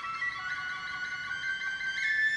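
Tin whistle (feadóg stáin) playing held high notes that step upward in pitch.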